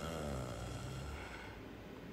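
A man's low, drawn-out voiced sigh, lasting about a second and a half and falling slightly in pitch.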